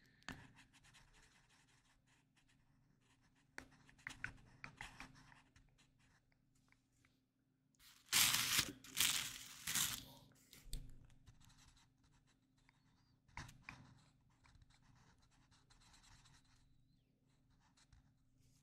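Felt-tip marker scratching on paper close up as a mandala is coloured in, in short strokes with quiet gaps. There are louder stretches of scratching and paper rustling a few times, the longest around the middle.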